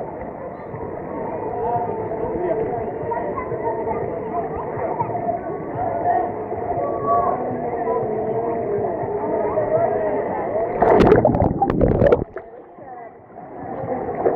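Many voices chattering and calling across a busy swimming pool, with water lapping close to the microphone. About eleven seconds in, a loud splash as a child comes off a water slide into the pool, followed by a brief drop in sound.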